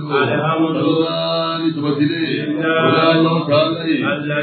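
A voice chanting an Islamic religious text in a slow melodic line, holding long notes that bend in pitch, through a microphone.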